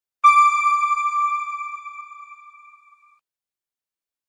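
A single bell-like chime as the news channel's end-card sound logo, struck once and ringing out as it fades over about three seconds.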